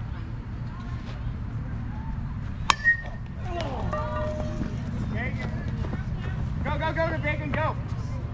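Players shouting short calls across a softball field during a live play. There is a single sharp metallic clink with a brief ring a little under 3 seconds in, over a steady low background rumble.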